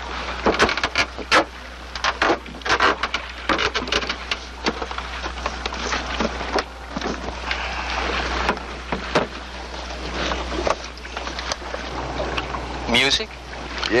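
Cassette recording of a fish floundering, played back as a shark lure: a dense, irregular run of clicks, knocks and splashy sounds over a steady low hum.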